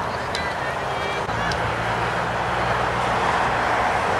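A vehicle engine running with a steady low hum that starts about a second in and grows slightly louder, over a constant rushing background noise, with a few faint distant shouts near the start.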